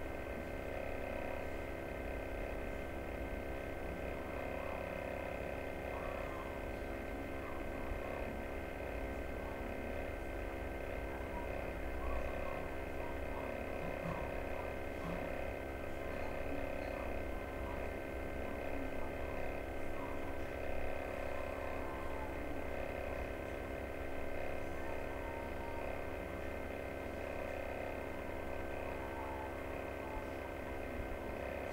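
Steady background hum with several held tones and faint noise, unchanging throughout.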